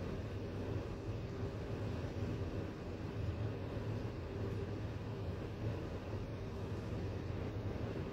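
ThyssenKrupp passenger lift car travelling downward at speed, a steady low rumble and hum from the car running down the shaft.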